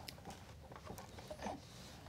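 Faint handling sounds of wire strippers working at the wires in an electrical box: soft rubbing and a few small clicks.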